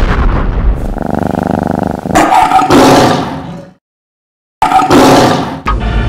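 Loud sound effects of an animated channel ident: a rumbling blast and whoosh, then a big cat's roar about two seconds in. The roar cuts off into a moment of dead silence, and roaring comes back twice near the end.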